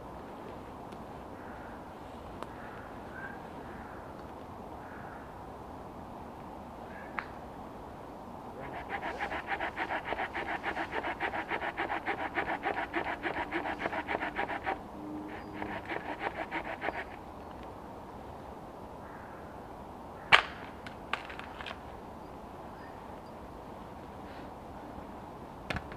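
A hand saw cutting a wooden pole in rapid, even strokes for about six seconds, pausing briefly, then a shorter run of strokes. Later, one sharp knock of wood, followed by a few lighter taps.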